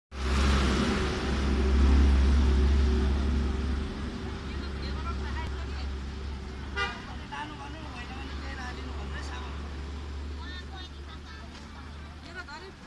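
Street traffic noise: a vehicle engine runs loudly for the first few seconds and then fades, with scattered voices of people talking.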